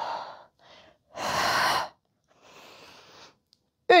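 A woman's breathing, hard and audible, through a floor crunch: a short exhale at the start, a longer, louder exhale about a second in, then a quieter breath. She is breathing out on the effort of lifting the torso.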